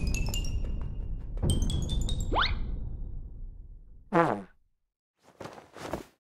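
Cartoon music and sound effects: light chiming notes over a low rumble, then a rising whistle-like glide about two seconds in. About four seconds in comes a short, falling cartoon sound effect, and a brief noisy burst follows near the end.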